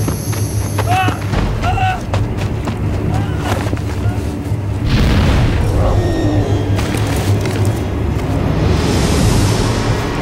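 Dramatic orchestral film score with deep booming low hits, swelling with a heavy hit about five seconds in. Brief pitched vocal sounds come in the first two seconds.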